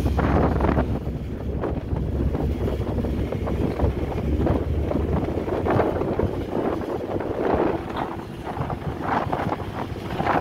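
Wind gusting across the microphone on the open deck of a moving car ferry, over the rush of choppy water along the hull.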